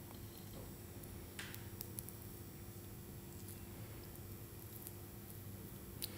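Faint, scattered clicks and a brief soft scrape of a metal teaspoon and fingers handling sticky dates and nut-butter paste on a ceramic plate, over quiet room tone.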